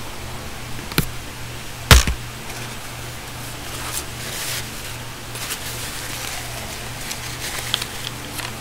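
Desk handling noises: a small click about a second in, then a sharp knock about two seconds in, followed by soft, sparse rustling, all over a steady low electrical hum.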